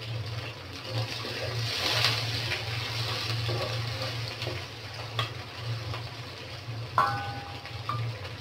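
Sliced onions frying in an aluminium karai, with a hiss of sizzling that swells and fades as a spatula stirs and scrapes them around the pan. About seven seconds in, a short metallic ring as a steel bowl touches the pan.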